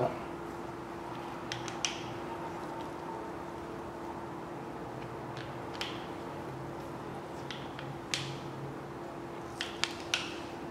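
A handful of sharp metallic clicks, spaced a second or more apart, from a half-inch socket and ratchet being worked on the cam gear bolts of a big-block Chevy timing set while the bolts are snugged. A steady faint hum runs underneath.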